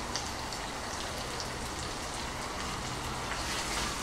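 Steady sizzle of baby king oyster mushrooms and ginger-garlic-onion paste frying in margarine and oil in a clay pot, while a thin stream of vegetarian oyster sauce is poured in.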